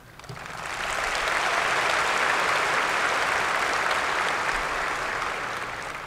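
Large audience applauding, swelling over about the first second, holding steady, then fading near the end.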